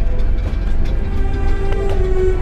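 Music with steady held tones over a heavy low rumble, with a couple of sharp clicks near the end.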